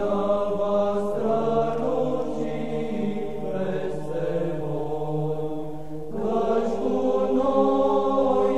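A choir chanting slowly in long held notes over a low sustained drone. The drone drops out about six seconds in, as a new, louder phrase begins.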